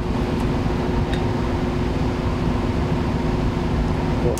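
Biosafety cabinet blower fan running: a steady hum with an even rushing hiss, and a faint click about a second in.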